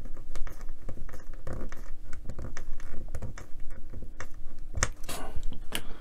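Small screwdriver driving a tiny screw into a die-cast metal model-truck chassis beam, with parts handled: a run of irregular small clicks and scratches.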